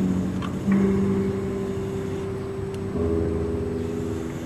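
Reel-to-reel tape deck, a Tandberg 3300X, playing back recorded music at its slowest tape speed, so the music comes out as low, drawn-out droning tones. The pitch shifts about a second in and again about three seconds in.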